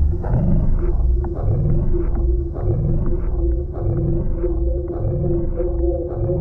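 Techno track in a stripped-down breakdown with no hi-hats: a pulsing low bass under a steady synth drone, with short falling synth figures repeating above.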